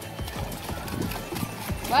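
A small child's feet splashing in shallow surf as a wave washes in, an uneven run of soft splashing steps, with faint voices in the background.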